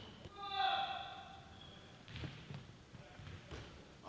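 A basketball dribbled on a hardwood gym floor, a few faint bounces in the second half.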